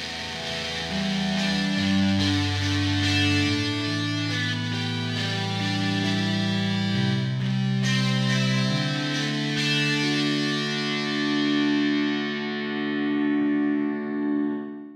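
Sampled electric guitar playing peel-pluck notes on the neck pickup, heard through the amp and room mics, played from a keyboard. A slow line of sustained notes changes pitch every second or two, each ringing on into the next.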